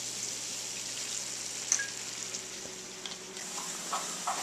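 Ground beef browning in a steel frying pan, sizzling steadily, with whiskey being poured into the hot pan.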